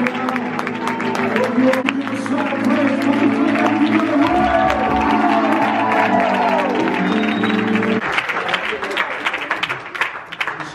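Live worship music in a church hall with the congregation clapping along to it. The music stops about eight seconds in, and scattered clapping goes on.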